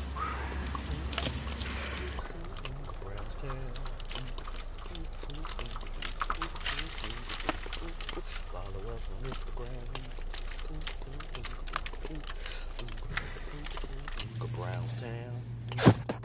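Packed hair, lint and dust being shaken and tipped out of a clear plastic vacuum dirt canister, giving many small irregular crackles and rustles over a low steady hum. A single sharp click comes near the end.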